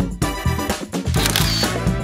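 Background music with a camera shutter click, as of a phone taking a photo.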